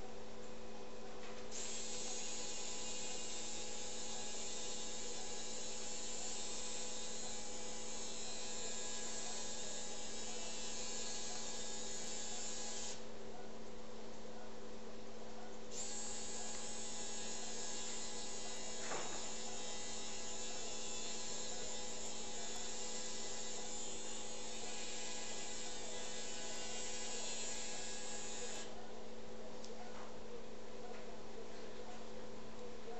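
Powered arthroscopic burr running in two long bursts, about eleven and thirteen seconds each with a short pause between, as it grinds bone at the femoral head-neck junction. A steady electrical hum underlies it.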